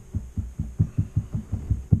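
Rapid, evenly spaced low thumps, about five a second, with the strongest one near the end.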